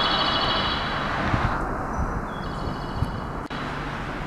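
Station platform's electronic warning tone for an approaching passing train: a high, steady electronic chime. It sounds for about a second and a half, pauses, and sounds again, over steady outdoor wind noise.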